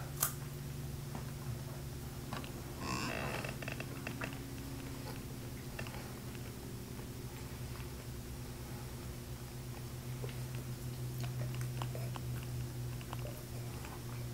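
Soft mouth sounds of people chewing pecans and sipping whiskey, with small scattered clicks, over a steady low hum.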